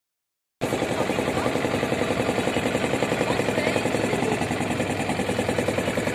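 A motor ferry boat's engine running with a fast, even throb, cutting in abruptly about half a second in.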